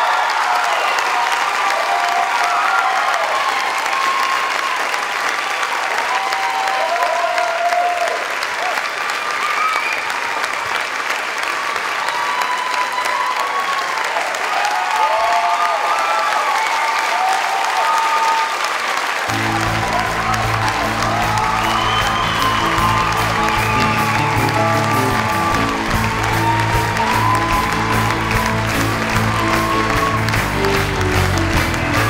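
A large theatre audience applauding and cheering, with scattered whoops. About two-thirds of the way through, music with sustained low notes starts under the applause.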